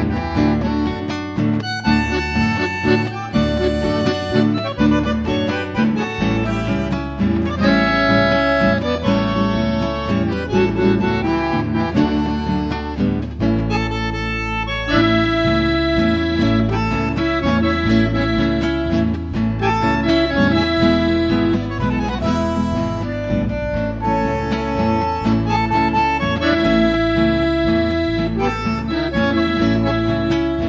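Bandoneon and nylon-string classical guitar playing an instrumental medley together. The music thins briefly about halfway through, then the next section comes in with held bandoneon chords.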